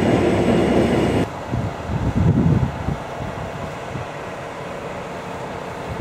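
For about a second there is the steady drone of a running combine harvester heard from inside its cab. Then the sound cuts to low, uneven rumbling outdoors, loudest about two seconds in, which settles to a quieter steady rumble.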